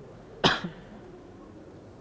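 A man coughs once, a single short, sharp cough about half a second in.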